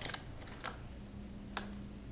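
Small sharp clicks of a Konica Autoreflex T3's on-off switch lever being worked by finger, three clicks spread across two seconds, as it is pushed toward the off-and-locked position after a few tries.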